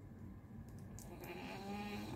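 A dog snoring faintly, with one drawn-out snore in the second half.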